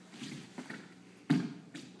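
Light footsteps on a hardwood dance floor, with one sharp, louder thump a little past halfway as a dancer lands from a kick.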